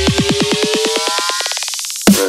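Dubstep build-up: a drum roll speeding up under a synth tone rising in pitch, while the bass drops away, leading into the drop.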